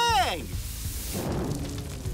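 A short questioning "mmh?" whose pitch rises and then falls, over background music. From about a second in, a rushing noise as cartoon flames flare up under the ironing board where a hot iron was left.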